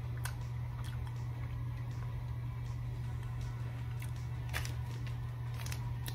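Someone chewing a bite of a granola-like peanut butter chocolate bar with the mouth closed: a few faint, short mouth clicks over a steady low hum.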